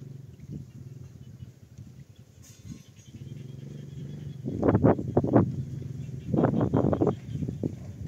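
An animal calling in two bursts of quick pulsed cries, the first a little past halfway and the second about a second and a half later, over a steady low hum.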